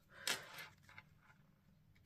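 Mostly quiet room tone, with one brief soft rustle a quarter of a second in from hands handling card and a sheet of adhesive rhinestones.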